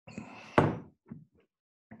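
A single sharp knock close to the microphone about half a second in, with faint rustling just before it and two soft ticks a moment later.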